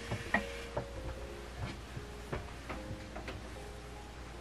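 A cat walking down a flight of stairs: a run of irregular thumps, about six in four seconds, over faint background music.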